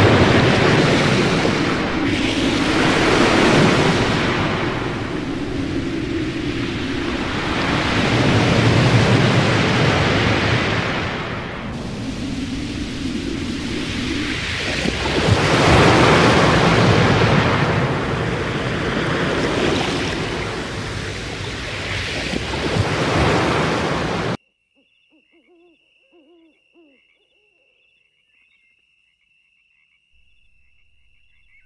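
Strong wind rushing in gusts, a dense loud noise swelling and easing every few seconds, that cuts off suddenly about 24 seconds in, leaving near silence with a faint, thin, steady high tone.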